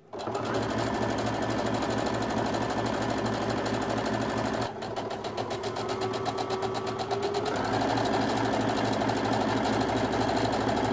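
Electric domestic sewing machine stitching, first a narrow folded fabric tab and then a folded-over top hem, running at a steady, rapid stitch. It dips briefly a little before the halfway point and then runs on slightly higher in pitch near the end.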